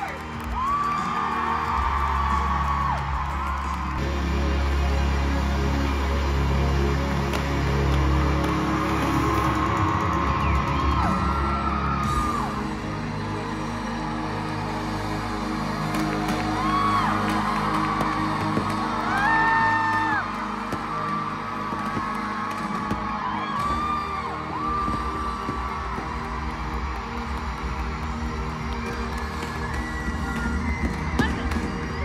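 Live pop concert heard from among the crowd: amplified music with a singer and heavy bass, with whoops from the audience. The heavy bass drops away about twelve seconds in while the singing goes on.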